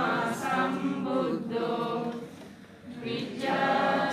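Many worshippers chanting Buddhist devotional verses together in unison, in drawn-out sung phrases, with a short pause about two and a half seconds in.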